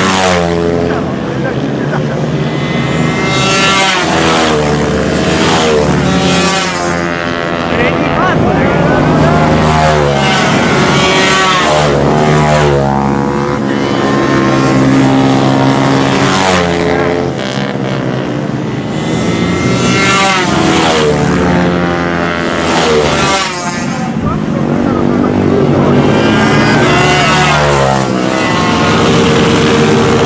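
Several racing minibike engines running hard as the bikes pass one after another, each note climbing and falling in pitch as they rev out of the corner and shift, the passes overlapping.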